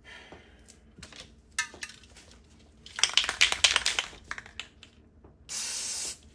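Spray bottle of alcohol spritzed onto a wet epoxy paint pour: a run of quick clicking spritzes about three seconds in, then one steady hiss of spray just before the end.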